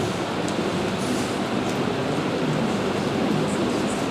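Steady rushing background noise of the hall with no speech, broken only by a few faint light ticks.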